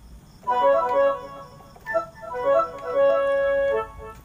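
Yamaha PSR arranger keyboard playing a short melodic phrase on a woodwind voice set up to imitate a dangdut suling, with delay switched on so the notes echo ('mantul-mantul'), and hall reverb turned off. Two runs of notes, the second ending on a long held note.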